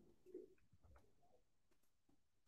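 Near silence: room tone, with a faint, short low-pitched sound about half a second in.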